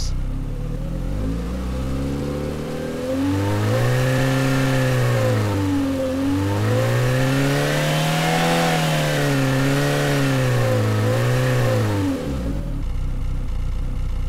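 Citroën Xsara engine recording played through the AudioMotors engine plugin, revved from idle up and down in three swells, the second the highest, then dropping back to idle near the end.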